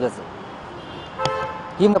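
A vehicle horn honks once, briefly, about a second in, over low outdoor background noise.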